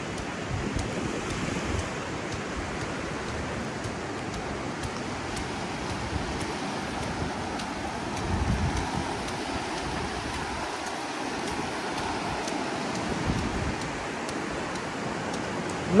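Shallow surf washing in thin sheets over a flat sandy beach: a steady rush of water that swells briefly about eight seconds in.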